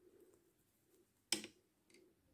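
Near silence with one short sharp click about a second and a half in: knitting needles clicking together as stitches are worked.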